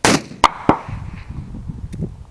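A single loud shot from a Thompson/Center Contender single-shot pistol chambered in 7mm TCU, firing a cast-bullet handload. It is followed by two shorter sharp cracks about half a second and three-quarters of a second later, with a fading tail.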